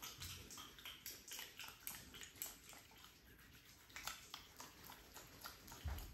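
Fingers rubbing and kneading through damp hair on the scalp in a head massage: a faint, irregular crackle of many small clicks and rustles. There is a soft thump near the end.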